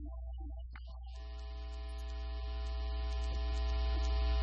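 Steady electrical mains hum. About a second in, a dense electronic buzz of many steady tones joins it and grows gradually louder.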